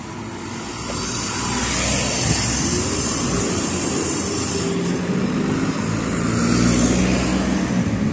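Road traffic passing close by: car and van engines with tyre noise, swelling louder about two seconds in and again near the end.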